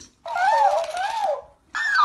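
Talking hamster plush toy playing back recorded speech in a high-pitched, squeaky voice: one phrase lasting over a second, then another high voiced phrase starting near the end.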